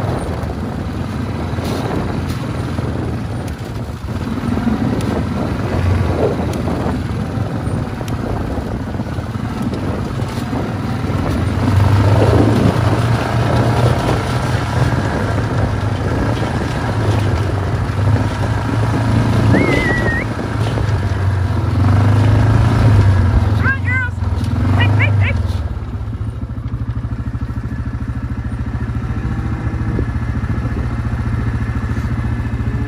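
Wind buffeting the microphone in gusts, a heavy low rumble that swells and fades, while a herd of beef cattle is driven across pasture. One or two cows moo with a falling call, the clearest about twelve seconds in, and a few short high whistles come near the end.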